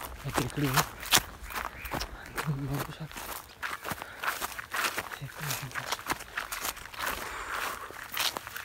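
Footsteps on dry grass and dirt: a quick, irregular run of sharp crunches, with a man's voice speaking a few short phrases over them.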